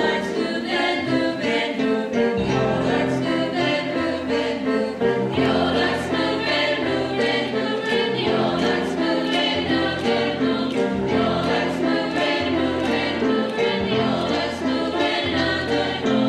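A mixed high school chorus singing in several parts, steadily and without a break.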